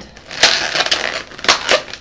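Inflated latex modelling balloons being twisted and locked together by hand: rubbery squeaking and rubbing, with a few sharp squeaks about half a second in and again around a second and a half in.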